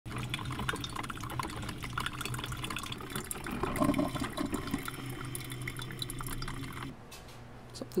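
Mr. Coffee drip coffee maker brewing: coffee trickling and dripping into the glass carafe, with many small pops and clicks over a low steady hum. The sound stops abruptly about seven seconds in.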